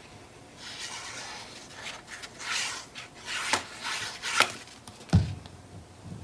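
Paper strips and cardstock being handled on a cutting mat: rustling and rubbing, a few light taps around the middle, and a dull thump about five seconds in.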